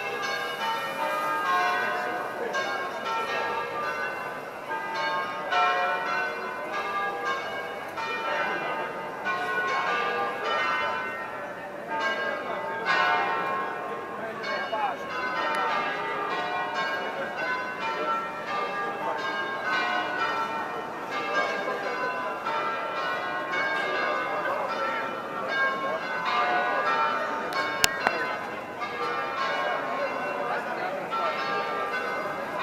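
Church bells ringing continuously in a fast peal of many overlapping strokes, over crowd chatter.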